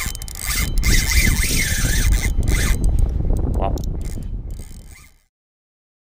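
Spinning fishing reel being cranked, its gears and line giving a fast rasping whir with a wavering whine, under a low rumble. The sound fades and cuts off about five seconds in.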